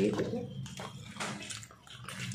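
A person chewing food with soft, irregular wet mouth sounds.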